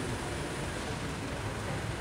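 Steady city street background noise: a low, even hum of traffic.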